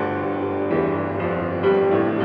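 Background music led by piano: held chords that change a few times.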